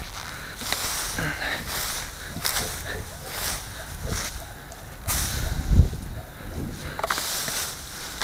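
A garden rake scraping and dragging through dry grass, pine needles and old ivy in repeated strokes about a second apart, with a louder dull thump a little before six seconds in.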